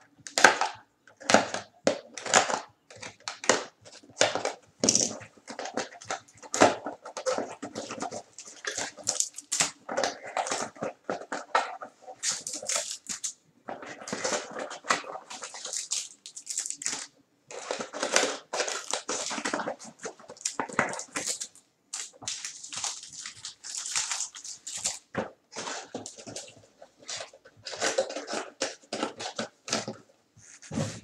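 Cardboard trading-card boxes being opened and plastic-wrapped card packs handled: a dense, irregular run of crackling, crinkling rustles and light knocks.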